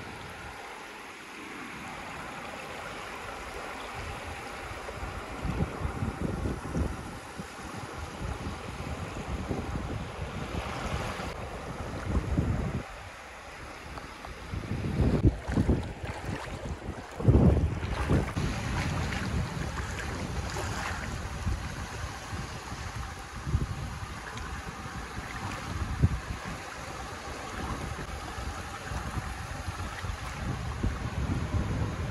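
Small waves washing onto a shallow shore, with wind gusting on the microphone in uneven low rumbles, loudest around the middle.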